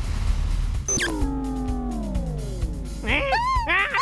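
Cartoon sound effect: a tone that slides steadily down in pitch for about two seconds, like a machine powering down, over background music. Near the end a cartoon character gives a wavering, alarmed cry.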